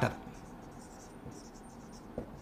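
Marker pen writing on a whiteboard, faint short strokes of scratching on the board's surface.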